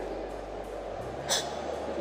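Background music and the hum of a large hall between phrases of speech, with one short, sharp breath-like hiss a little past halfway.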